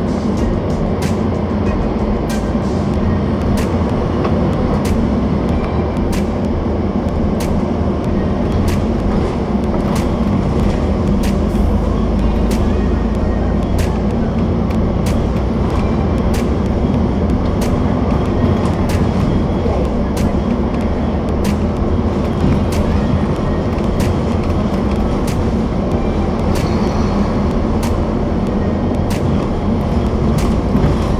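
Steady engine rumble and road noise of a double-decker bus in motion, heard on the upper deck, with sharp clicks or rattles about once or twice a second.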